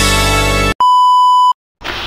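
Electronic intro music that cuts off abruptly, followed by a single steady electronic beep of under a second, the tone of a loading-bar animation reaching 100%, then a brief silence.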